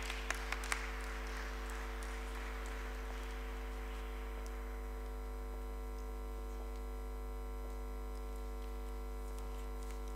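Audience applause dying away over the first few seconds, with a few sharp claps near the start. Under it a steady electrical hum from the sound system runs throughout.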